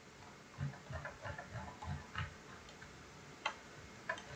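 Faint, irregular ticking of a computer mouse's scroll wheel being turned, then a single sharper click about three and a half seconds in.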